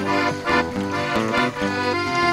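Live instrumental music: a single instrument playing a quick, lively run of notes over chords, as a short solo.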